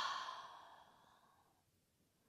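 The tail of a long open-mouthed exhale, a sigh-like breath out, fading away about a second in, followed by near silence.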